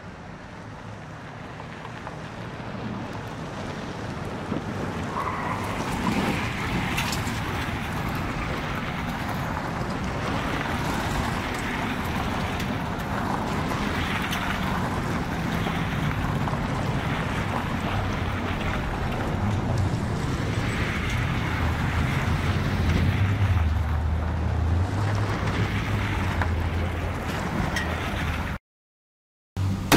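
Several cars speeding across a gravel lot: engine noise and tyres on loose gravel, growing louder over the first several seconds, with wind buffeting the microphone.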